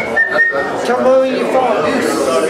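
A person whistling, with a held note that stops a little under a second in, over voices and chatter in a room.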